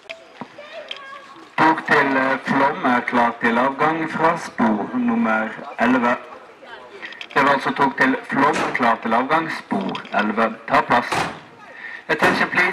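Railway station public-address announcement over the platform loudspeakers, a voice starting about a second and a half in, pausing briefly near the middle and stopping just before the end, calling the departure of the train to Flåm.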